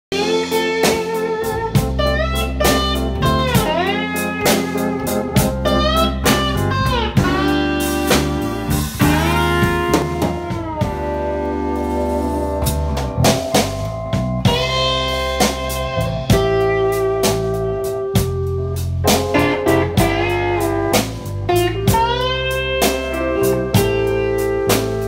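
Blues band playing live: an electric guitar solos with many bent notes over a drum kit keeping time and sustained keyboard chords underneath.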